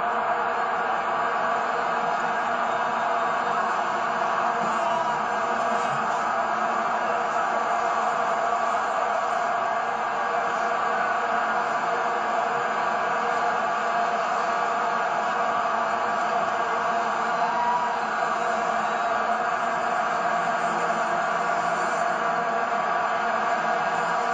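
Stadium crowd noise dominated by the continuous drone of many vuvuzelas, a steady buzzing hum with no breaks.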